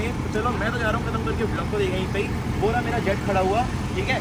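A man talking, with a steady low vehicle rumble underneath.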